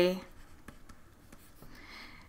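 Faint clicks and light scratching of a stylus writing on a pen tablet.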